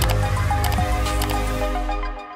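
Electronic outro jingle music: a deep bass note and held tones, with a sharp hit at the start and a few short bright clicks in the first second.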